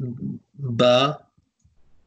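Speech: a voice says a short word, "ba".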